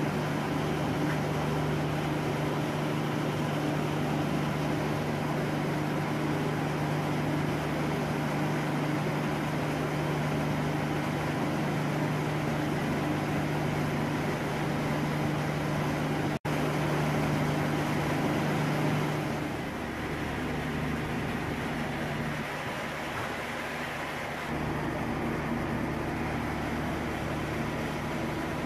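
Drilling-rig machinery running steadily: a constant low hum under a broad machine noise. The sound drops out for an instant a little past halfway, then goes on at a slightly changing level.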